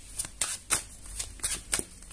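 A tarot deck being shuffled in the hands: a run of short, irregular card snaps, about three or four a second.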